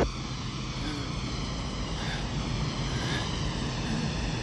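Steady drone and rush of a jet aircraft, a Lockheed NF-104A, falling in a spin, with several held tones in the noise.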